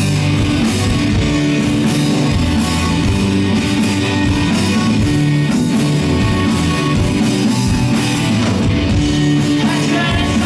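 Live rock band playing loud and steady, with electric guitars, bass and drum kit.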